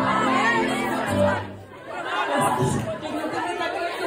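A sustained keyboard chord held for about a second and a half and then stopping, with several voices talking over it; talk carries on after the chord ends.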